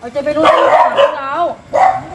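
A dog barking among men's voices.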